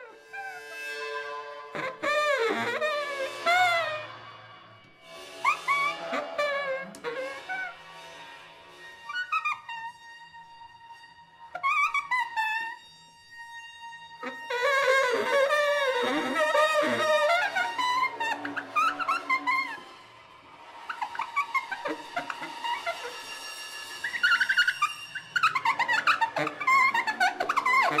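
Free improvisation for baritone saxophone and bowed cymbal: high, wavering tones that bend in pitch, played in phrases of a few seconds with short gaps, and a steady held tone in the middle.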